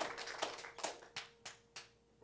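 Hand clapping that fades away over about two seconds, the claps growing sparser and quieter until they stop. A faint steady held tone runs underneath.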